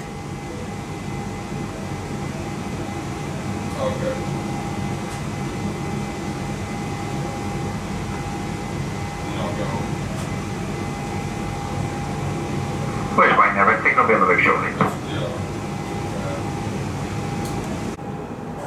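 A 1992 Stock Central line tube train standing at a platform, its equipment giving a steady hum with a thin high tone. About thirteen seconds in, a loud two-second burst of rapidly pulsing sound comes as the doors close.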